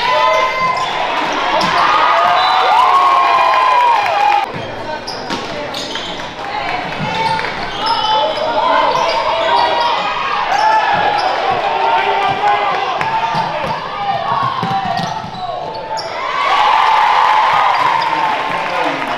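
Basketball game sound in a gym: a ball being dribbled on the hardwood floor, under the shouts and chatter of players, coaches and spectators.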